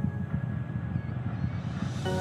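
Falcon Heavy's Merlin 1D rocket engines firing in the ascent burn: a rough low rumble.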